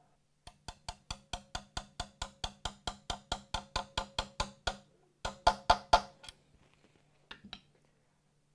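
Small hammer tapping a metal bridge-stud bushing into its hole in a guitar body, over the bridge ground wire: about twenty light taps at about five a second, growing louder, then after a short pause four or five harder blows, and two faint taps near the end.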